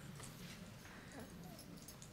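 Faint room tone of a large auditorium, with scattered small clicks and rustles from the audience.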